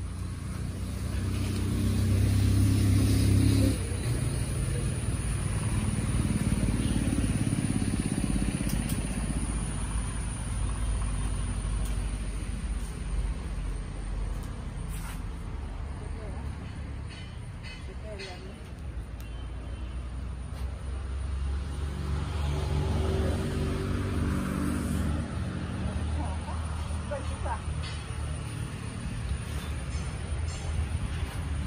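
Low rumble of passing motor vehicles, with a person's voice at times. It swells in the first few seconds and again past the twenty-second mark.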